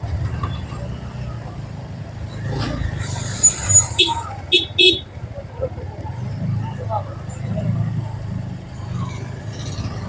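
Motorcycle running through dense street traffic, a steady low rumble of engines and road noise. A few short high beeps come about four to five seconds in.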